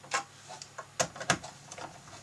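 A few small, irregular clicks and ticks of a 7/32-inch socket driver working the screws that hold the gauge cluster's top circuit board. The sharpest click comes about a second in, with another close after it.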